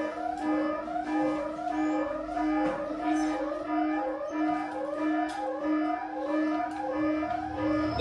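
Electronic sci-fi sound effect played over the stage speakers as the big red button is activated: a steady, pulsing low tone under rising, warbling sweeps that repeat about twice a second.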